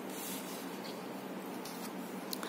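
Faint rustle of tarot cards being handled on a cloth, with one card slid off and turned over, over a steady background hiss.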